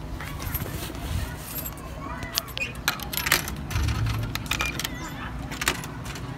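Coins clinking and being fed into a drink vending machine: a run of sharp metallic clicks, the loudest about three seconds in.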